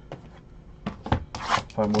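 A shrink-wrapped cardboard box of trading cards handled on a tabletop: a few light knocks, then a short scraping rub.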